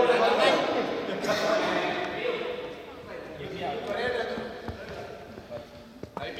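Several young people's voices talking in a large, echoing sports hall, loudest in the first second and trailing off, with a few dull thumps in the hall.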